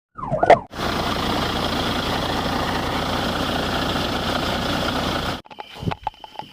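A brief police siren chirp whose pitch dips and rises, followed by a loud, steady rushing noise from the patrol car on the dash-camera microphone. The noise cuts off abruptly near the end.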